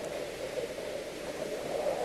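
A steady, even hiss of noise, with no tones or knocks in it.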